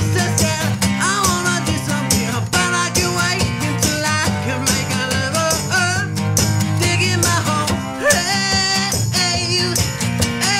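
A song played live on strummed guitar, with a steady low bass throughout and a dense rock-style sound.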